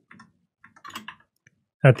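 A few scattered computer keyboard key clicks while a line of text is typed, then a man's voice starts near the end.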